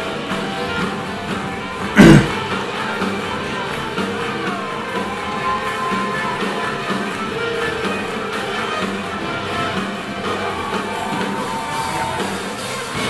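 A live swing band plays, with double bass, saxophone, guitar and drum kit, as heard on the competition footage. A short, loud burst cuts in about two seconds in.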